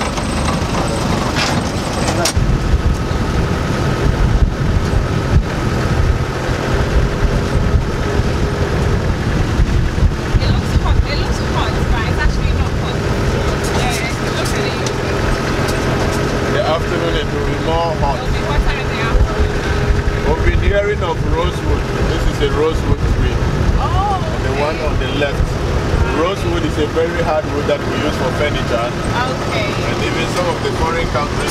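Open-topped safari jeep driving on a dirt track: steady engine hum with rumbling road noise and rattles, and wind buffeting the microphone.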